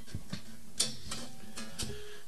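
Acoustic guitar being handled before playing: scattered light clicks and taps of fingers on the strings and body, the sharpest about a second in, with strings ringing faintly underneath.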